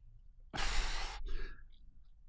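A man sighs into a close microphone: one breath about half a second in, followed by a shorter, fainter one.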